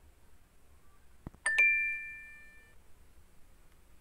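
A short click, then the quiz game's correct-answer chime: two bell-like notes, a lower one followed at once by a higher one, ringing out and fading over about a second.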